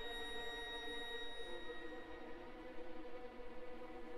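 Orchestra, mostly strings, holding a soft, sustained chord in concert. A high, thin held note fades out about halfway through.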